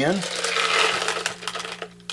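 Hard buckshot pellets rattling and clinking together in a clear jar as a handful is scooped out: a dense run of small clicks that dies away near the end.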